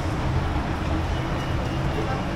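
Steady low rumble of a busy elevated rail station's ambience, with no distinct events standing out.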